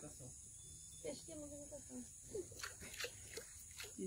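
Faint, low voices murmuring over a steady high hiss, with a few small drips and light water clicks in the last second or so as a hand starts to stir the surface of the shallow flooded water.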